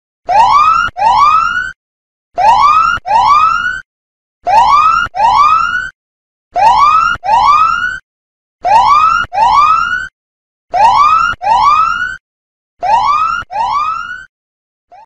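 Countdown-timer alarm sound effect signalling that time is up: a loud pair of rising whoops, repeated seven times about every two seconds.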